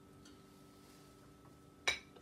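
Quiet room tone, then a single sharp clink of tableware near the end.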